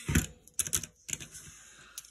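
Key presses on a calculator with round, typewriter-style keys: several quick clicks in the first second and a half as a column of bills is added up.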